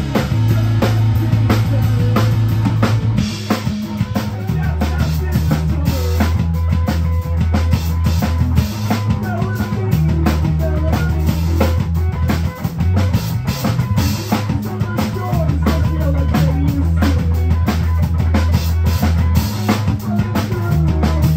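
Live rock band playing: a drum kit close by and loudest, with busy snare, bass drum and cymbal strokes, over electric bass notes that shift every couple of seconds and electric guitars. An instrumental passage with no singing.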